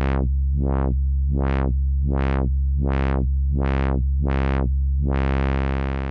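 Modular synthesizer tone with its filter cutoff driven by the Elby Designs ChaQuO chaos circuit, opening and closing about once every three-quarters of a second. A little after five seconds in, the sweeps stop and the filter stays open: the chaos circuit has run to its upper rail and is holding there.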